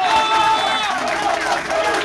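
Crowd of supporters cheering and clapping in a room, with a high held cry over it in the first second and a man laughing.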